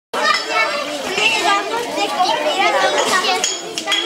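A group of young children chattering and calling out, many high voices overlapping.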